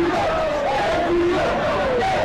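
A crowd of voices shouting together, loud and unbroken, with several held and gliding voice tones overlapping, as from a group of schoolchildren.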